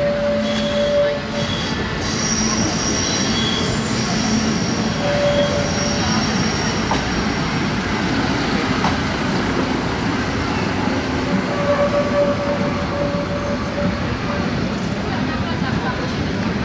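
SŽDC MUV 75 track maintenance railcar rolling slowly past at close range, its diesel engine running steadily, with high wheel squeals from the rails during the first few seconds.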